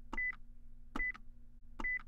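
Three short, high electronic beeps, evenly spaced a little under a second apart, each with a sharp click: a quiz countdown-timer sound effect ticking while the answer is awaited. A faint steady low hum lies beneath.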